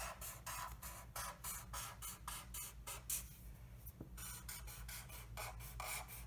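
Sharpie marker tip squeaking and scratching on paper in quick short strokes, a few a second, as zigzag spikes are drawn, with a pause of about a second just past the middle.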